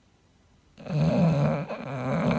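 English bulldog snoring in its sleep: two long rasping breaths, starting almost a second in after a silence.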